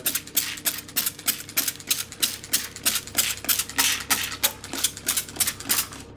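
Hand-pumped water spray bottle misting unbaked baguette dough before baking, the trigger worked in a rapid even series of short spritzes. The extra moisture stands in for steam in the oven.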